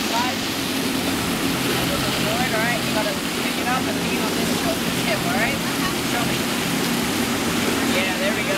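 Steady rush of water pouring over a surf-simulator wave machine, with indistinct voices in the background.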